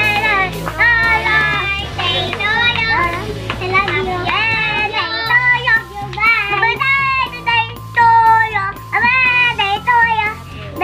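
Children singing over backing music with a steady bass line that changes chord about once a second.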